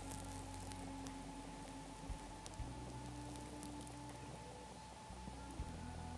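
Faint, slow background music of sustained low notes that shift every few seconds.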